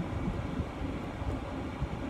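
Steady low rumbling background noise with a hiss above it, and no distinct event.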